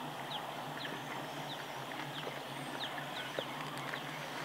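A bird calling one short, falling note over and over, about twice a second, over a steady outdoor background. Faint rustling and a click as a backpack is rummaged through.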